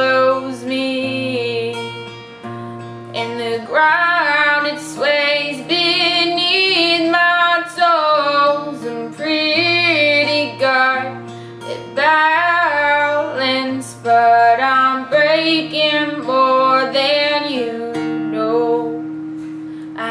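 A young woman singing in phrases that rise and fall, accompanying herself on a strummed acoustic guitar. Near the end the voice drops out and a held guitar chord rings and fades.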